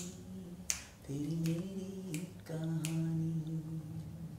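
Finger snaps keeping a steady beat, one about every 0.7 s, while a voice hums a wordless tune in long held notes.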